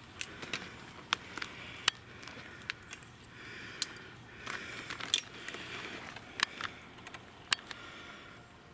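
Footsteps through dry conifer needle litter and dead twigs, with irregular sharp snaps and crackles of twigs breaking underfoot over soft rustling.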